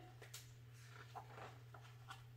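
Near silence: room tone with a steady low hum and a few faint, brief ticks.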